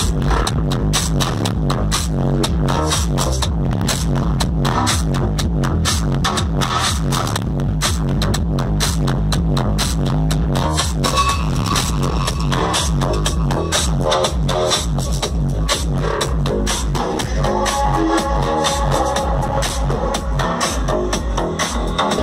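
Electronic dance music played loud through a car audio system, with a steady beat and heavy bass from a single Massive Audio subwoofer in a ported enclosure.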